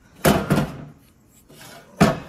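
An aluminium Edelbrock E-Street small-block Chevy cylinder head being flipped over by hand on a workbench: two heavy knocks close together, a lighter scuff, then another knock near the end.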